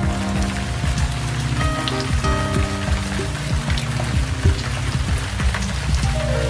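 Rain sound effect, a steady hiss, playing over background music.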